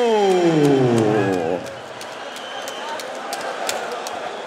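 A ring announcer's long, drawn-out shout of a fighter's name, one held vowel sliding steadily down in pitch and ending about one and a half seconds in. It is followed by a quieter, steady arena din.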